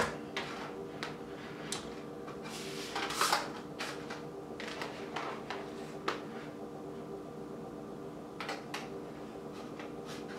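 Soft scattered taps and rustles of cooked elbow macaroni being laid by hand into disposable aluminium foil pans, busiest a little after three seconds in, over a steady low hum.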